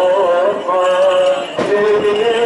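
A male cantor singing Orthodox Byzantine chant into a microphone, heard through a loudspeaker: long held notes that slide and step between pitches, with a brief break about one and a half seconds in.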